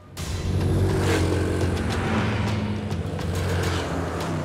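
Motor vehicle engines running loudly with a steady low drone, coming in suddenly at the start.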